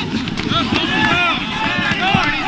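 A voice whose pitch swoops up and down without pause, over a dense, busy lower layer of sound, as on an edited vocal soundtrack.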